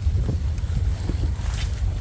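Wind buffeting the microphone, a steady low rumble, with faint rustling of chili plants as they are picked.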